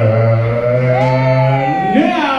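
A man singing one long held note over a sustained low chord. The note steps up in pitch about halfway through, and the low chord drops away near the end.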